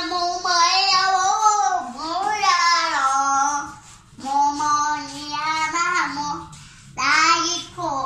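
A boy singing solo into a handheld microphone, with no instruments, in several held, gliding phrases broken by short pauses for breath.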